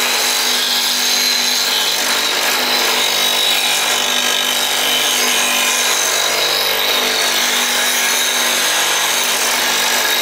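Bench grinder running with a steel turning gouge, held in a fingernail-grind jig, pressed against its 80-grit wheel: a steady, unbroken grinding noise of steel on the stone.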